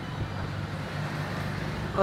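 Road vehicle engine running steadily in the background, with a low hum that grows a little louder toward the end.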